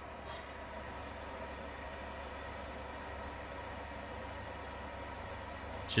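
Steady hum and hiss of the powered-up cockpit electronics and cooling fans running on ground power, unchanging throughout.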